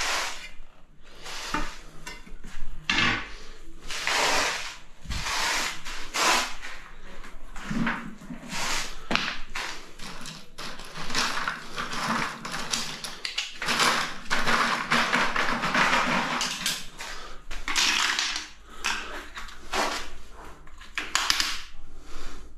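Metal tools scraping and clinking against hard surfaces in a run of irregular strokes, with longer scrapes around the middle and again near the end.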